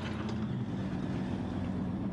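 Heavy construction machinery's diesel engine running steadily, a low, even engine note.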